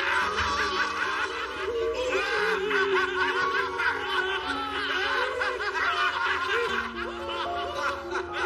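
Several men laughing together over background music that holds long sustained notes.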